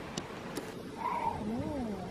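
A river otter giving a cat-like mewing call from about a second in, its pitch rising and then falling.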